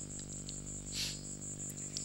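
A faint, high-pitched chirp pulsing evenly about seven times a second over a steady low hum, with a soft breath about halfway through.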